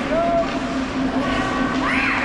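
Indoor ice hockey rink ambience: a steady hum under distant shouts and calls from players and spectators, with one voice rising and falling near the end.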